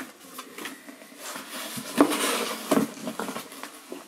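A package being opened by hand: rustling and crinkling of the wrapping, with a sharp snap about two seconds in and another shortly after.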